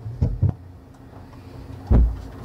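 Low knocks and thumps of a hand bumping a table or its microphone: two short knocks early on and a louder, deeper thump near the end, over a faint steady hum.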